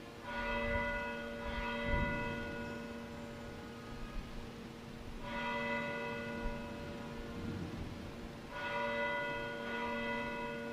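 Church bell tolling slowly for a funeral: about five strokes at uneven intervals, each ringing on and fading before the next.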